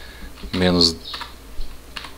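A couple of light keystrokes on a computer keyboard as a terminal command is typed, with one short held vocal syllable about half a second in.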